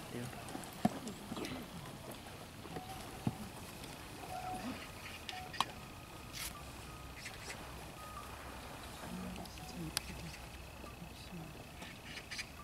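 Quiet outdoor ambience with faint, indistinct voices murmuring, a few scattered sharp clicks and a thin steady high tone in the second half.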